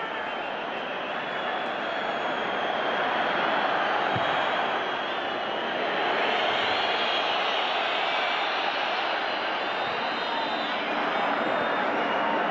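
Football stadium crowd noise: thousands of fans making a steady roar that swells a little a few seconds in.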